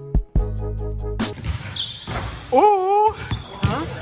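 Background music stops about a second in; then a basketball bounces on a gym's hardwood floor, with a loud, brief wavering voice just before the three-second mark.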